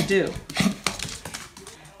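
A woman's voice ends a phrase, then a few light clicks follow in a quiet small room.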